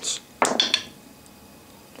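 Two wooden dice thrown into a felt-lined wooden dice tray: a short clatter about half a second in as they land and tumble to rest.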